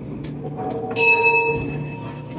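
A small temple bell in a hand-carried wooden frame is struck once about a second in and rings on with several clear, steady tones that slowly fade.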